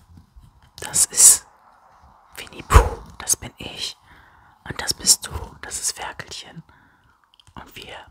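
Close-miked whispering in short, irregular bursts, with one louder pop into the microphone about three seconds in.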